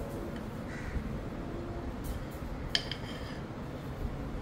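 Low, steady room rumble with no distinct activity sound, broken once about three-quarters of the way in by a short, sharp, high-pitched sound.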